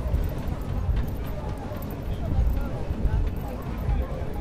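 Wind buffeting the camcorder microphone in an uneven low rumble, with faint voices in the background.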